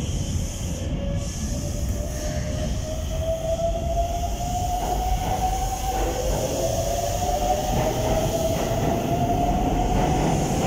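Keikyu 600 series electric train pulling away from a station, its traction motors whining in a rising pitch over a low rumble. About six seconds in the whine drops back down and climbs again as the train gathers speed.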